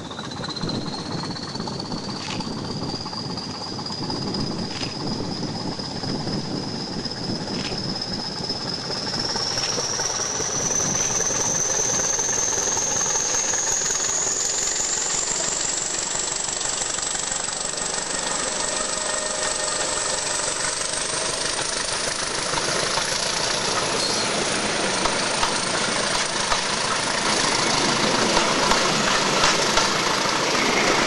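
Heritage diesel locomotive hauling a passenger train past at close range, its engine running under power. A high whine climbs steadily in pitch as the train goes by, and a few regular clicks of wheels over rail joints come in the first part. The sound grows louder as it passes.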